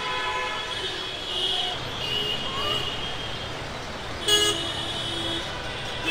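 Vehicle horns honking in busy street traffic: several overlapping honks over the traffic noise, with one short, loud honk about four seconds in.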